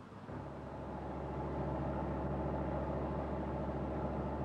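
A fishing boat's diesel engine running steadily under way: an even, low drone that comes in about a third of a second in and swells slightly over the first second.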